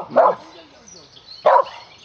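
A dog barks twice, about a second and a quarter apart.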